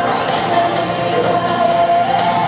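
Live pop concert: female pop group singing together over amplified backing music, with a long held note in the second half.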